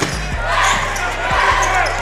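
Basketball bouncing on a hardwood court, a few short thumps, over arena background noise.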